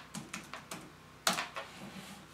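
Typing on an ASUS laptop keyboard: a quick run of about five key clicks, then a single louder key press a little after a second in.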